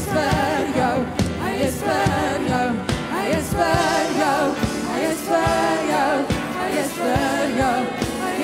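Live worship music: a woman sings lead into a microphone with vibrato over a band, with repeated drum hits.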